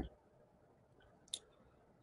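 Near silence: room tone, with one faint, very short click a little past halfway.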